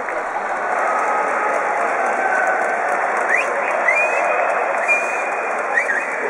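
Baseball stadium crowd applauding and cheering from the stands in a steady wash of noise. A few short rising high-pitched sounds cut through from about halfway on.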